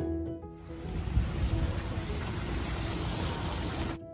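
Background string music cuts off about half a second in. It gives way to a steady rushing outdoor noise from the live camera sound at a bayside waterfront, with an uneven low rumble.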